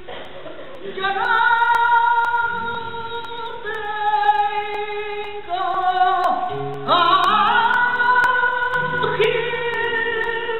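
Female flamenco singer singing long held, ornamented phrases with a flamenco guitar accompanying underneath. The voice comes in about a second in, in several long phrases that bend and slide in pitch.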